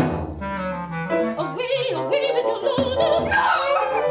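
Operatic music from a small instrumental ensemble, coming in loudly at the start, with wavering vibrato melody lines above it.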